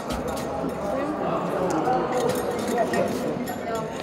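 Indistinct chatter of many people talking at once, with a few light clinks.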